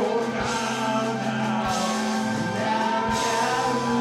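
A live rock band playing, with a singing voice over the drums and guitar.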